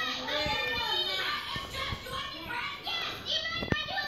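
Cartoon dialogue in high children's voices playing from a television in the room, with a single sharp click shortly before the end.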